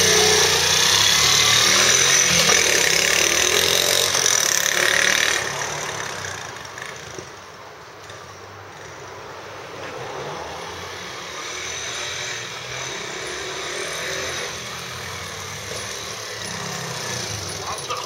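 Honda Magna 50's small single-cylinder four-stroke engine, bored up to 88cc with a Daytona kit, running loud as the bike pulls away. Its sound falls off sharply after about five seconds as the bike rides off, then grows again near the end as it comes back.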